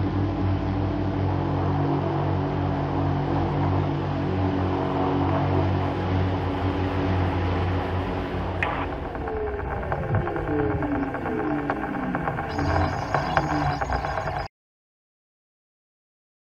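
Electric rotors of the 44%-scale OPPAV eVTOL test aircraft running steadily through the automatic landing, then spinning down after touchdown, several tones falling in pitch together from about nine seconds in. The sound cuts off abruptly near the end.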